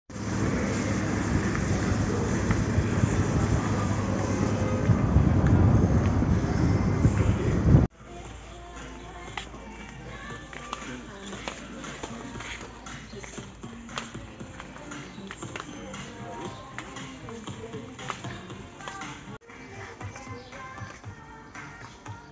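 Wire shopping cart rolling over a concrete floor, its wheels running and basket rattling, loud for about the first eight seconds until an abrupt cut, then quieter with many small clicks and rattles. Music plays underneath.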